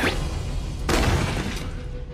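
Anime fight sound effect: a heavy punch impact with a crashing, shattering burst about a second in, over background music.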